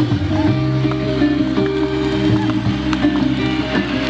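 Music playing, with long held notes.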